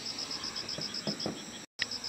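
An insect chirping in an even, fast pulse, about eight high-pitched chirps a second, with a few faint low pops around the middle. The sound drops out for a split second near the end.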